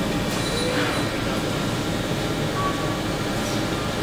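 Steady factory machinery noise: a continuous mechanical hum and whir with no distinct strokes.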